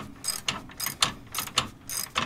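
Hand ratchet wrench clicking in quick back-and-forth strokes, about three bursts of rapid pawl clicks a second, as it turns a fastener at the base of a 1993 Ford F-150's front coil spring.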